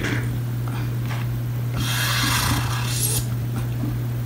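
A steady low hum, with a breathy, rustling noise about two seconds in that lasts roughly a second.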